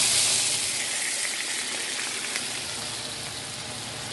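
Water poured into a hot frying pan of browned onions, sizzling loudly at first and then gradually easing off as the liquid begins to simmer: the start of an onion gravy.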